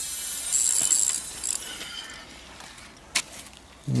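A landed sturgeon thrashing in shallow water at the bank, splashing, the splashing dying away over the first two seconds. A single sharp click a little after three seconds in.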